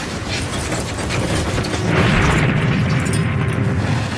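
Wartime destruction sound effects: dense crackling and low rumbling noise that swells into a louder, explosion-like roar about halfway through.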